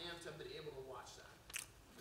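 Faint, quiet speech in a large hall, partly off microphone. There is a sharp click about one and a half seconds in.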